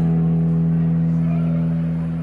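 Live blues band holding a steady low chord between sung phrases, with no vocal over it.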